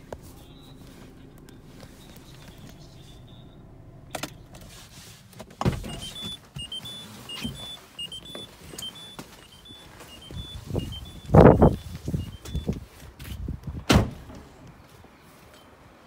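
Peugeot 207 CC warning chime beeping about twice a second for several seconds, among clunks of the door being opened and handled, then a sharp thunk about two seconds from the end as the door is shut.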